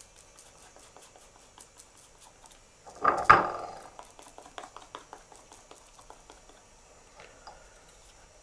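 Faint dabbing and scratching of a glue applicator working glue over the back of a paper cutout, with a brief louder rustle or knock about three seconds in.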